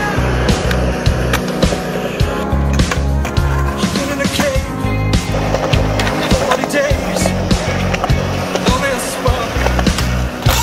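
Skateboard wheels rolling on concrete, with sharp clacks of the board and the scrape of it sliding along a concrete ledge. Music plays underneath.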